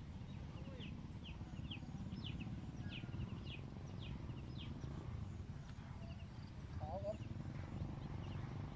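Low, steady rumbling outdoor noise under a bird's short, quick falling chirps, about two a second for the first five seconds. A brief wavering call comes about seven seconds in.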